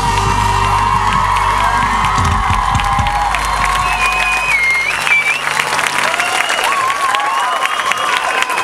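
The band's last held chord rings out and fades away over the first few seconds while a live audience applauds and cheers as the song ends.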